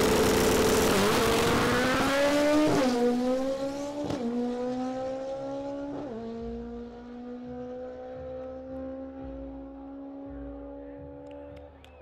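Drag race car launching hard from the line at full throttle. Its engine note climbs and drops with several quick upshifts in the first six seconds, then pulls steadily in a high gear as it fades away down the track.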